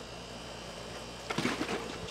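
Faint low steady hum, with a few light clicks and knocks about a second and a half in.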